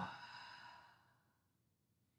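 A woman's long open-mouth exhale, a breathy sigh that fades away over about a second, followed by near silence.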